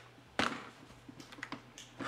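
A few short clicks and taps: a sharp one about half a second in, then several lighter ones around a second and a half in.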